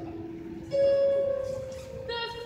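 Live art song for female voice and piano. A single held note starts sharply about two-thirds of a second in and fades over the following second.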